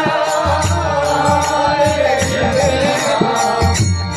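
Devotional kirtan: a harmonium playing held chords under chanted singing, with a steady jingling beat of small hand cymbals.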